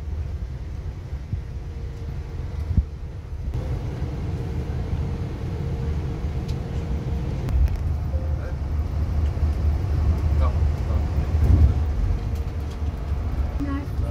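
Cabin noise inside a moving Neoplan Tourliner coach: a steady low rumble from the engine and the tyres on the road, growing somewhat louder about halfway through.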